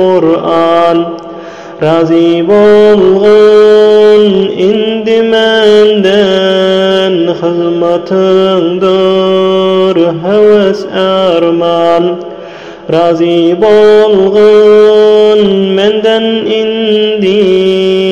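A poem sung as a chant: one voice holding long, drawn-out notes with ornamented turns in pitch, broken by two short pauses, one near the start and one about two-thirds of the way through.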